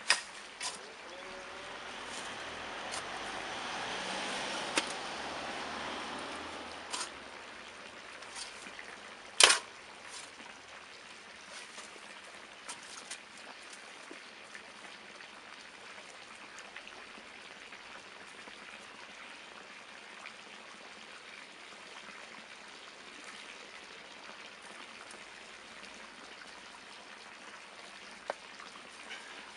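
Spade working compost into a metal wheelbarrow: a few seconds of soil sliding and pouring, with several sharp knocks of the spade, the loudest about nine and a half seconds in. Afterwards only faint rustling as clumps are broken by hand.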